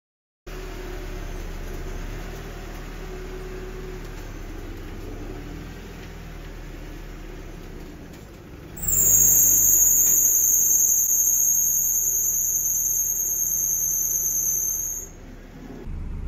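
NB2 Mazda Miata engine running at idle. About nine seconds in, as the front wheels are turned, a loud high-pitched squeal starts, wavers slightly, holds for about six seconds and stops, which the owner takes as a sign that the power steering needs attention.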